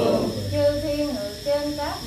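A woman's voice intoning a Buddhist chant in a sung, melodic style, holding long notes and gliding up in pitch near the end, as the group's chanting drops away at the start.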